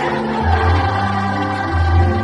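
A large group of children singing together as a choir in held notes over a music accompaniment with a steady bass.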